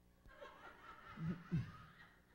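Faint chuckling laughter, a few short low chuckles in the second half.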